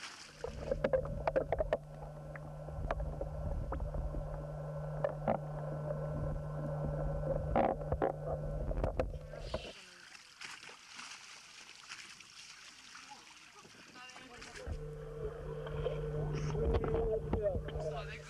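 Boat engine running steadily, with sharp knocks and clatter over it. It cuts out about ten seconds in and comes back about five seconds later.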